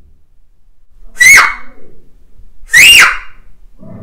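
Two short, loud, rising whistle-like calls, about a second and a half apart.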